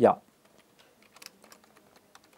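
Computer keyboard being typed on: a run of light, irregular key clicks.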